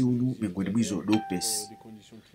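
A steady, single-pitched electronic tone, like a beep, lasting about a second, from about a second in, as a man's voice trails off.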